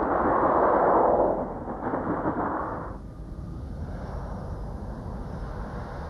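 A car passing close overhead with a loud rumble of tyres and engine that fades away over the first three seconds. A lower steady vehicle noise remains.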